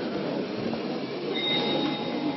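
Train-like noise: a steady rumbling rattle, joined about one and a half seconds in by high squealing tones like wheels on rails.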